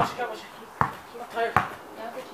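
Basketball being dribbled on a hard court, three bounces about 0.8 s apart.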